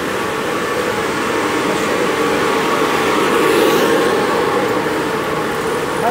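Latex glove production line machinery running: a steady mechanical hum with a few held tones, growing slightly louder near the middle.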